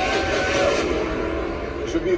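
Sci-fi action film trailer soundtrack: dense sound effects with a short rising electronic whine in the first second as a blaster is fired on screen, easing off toward the end.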